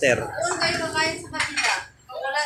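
Dishes and cutlery clinking at a dining table while a drink is poured from a plastic bottle into a glass, with sharper clinks about one and a half seconds in.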